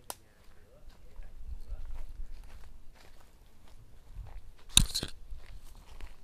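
Footsteps crunching and scuffing through dry leaf litter on orchard ground, with one loud brief crunch of leaves about five seconds in.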